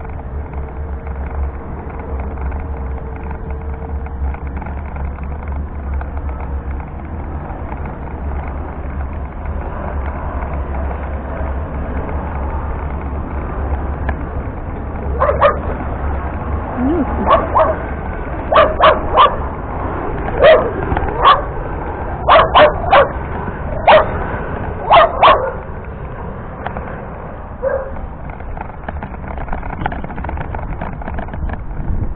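A dog barking about halfway through, roughly a dozen sharp barks in quick groups of one to three over some ten seconds. Under it runs the steady low hum of a Meyra Optimus 2 power wheelchair's drive motors.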